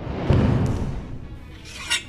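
Music with an edited-in transition sound effect: a loud swell of noise about a quarter second in that fades away over the following second, and a short hiss near the end.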